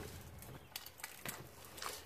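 Faint handling noise from a die-cast John Deere toy tractor being turned over in gloved hands against a cardboard box, with a few small clicks.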